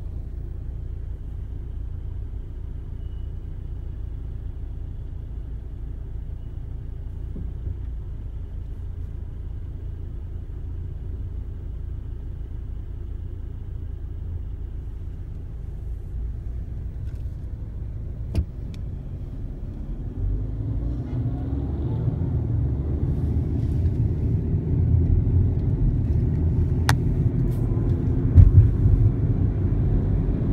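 Car engine and cabin noise heard from inside the vehicle: a steady low idle rumble, then from about 20 seconds in the engine note rises and the road noise grows louder as the car pulls away and speeds up.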